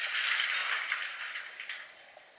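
Water splashing in a large stainless steel bowl as hands are lifted out of it, dying away over about a second and a half, with a few faint drips near the end.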